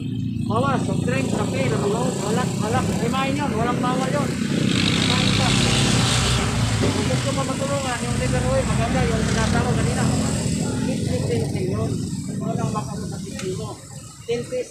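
Men's voices talking over road traffic, with a vehicle passing that swells and fades between about four and ten seconds in.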